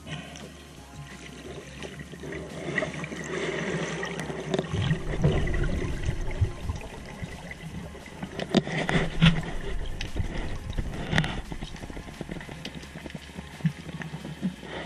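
Water noise picked up by a GoPro in its underwater housing: a churning rush that swells about five seconds in, with a run of sharp knocks and splashes a few seconds later.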